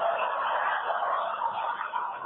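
Audience laughing together, a dense wash of crowd laughter with no single voice standing out.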